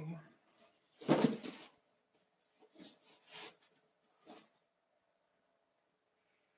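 A stack of 45 rpm records in paper sleeves being moved and set down: a short, loud shuffling thump about a second in, followed by a few softer rustles and knocks.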